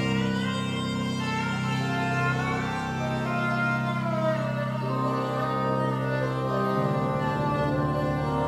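ROLI Seaboard, a soft silicone-keyed keyboard, played with a sustained synthesizer sound: held low notes under a melody that slides smoothly up and down in pitch between notes. The bass changes to a new note about seven seconds in.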